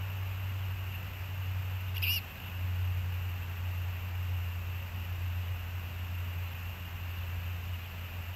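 A bird's single short, high chirp about two seconds in, over a steady low hum.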